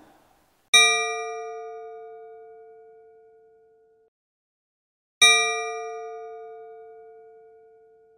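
Two struck bell tones about four and a half seconds apart, each starting sharply and ringing out, fading away over about three seconds.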